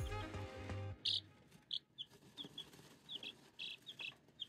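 Background music that stops about a second in, followed by baby chicks peeping: a string of short, high peeps, about three a second.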